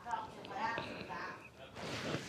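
Low, indistinct voices: short fragments of quiet speech, too soft to make out words.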